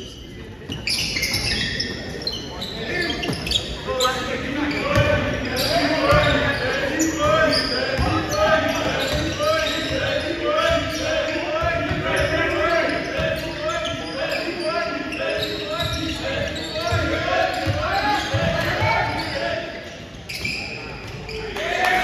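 Basketball bouncing on a gym's hardwood floor during play, the thuds echoing in the large hall, amid indistinct shouts and voices from players and spectators.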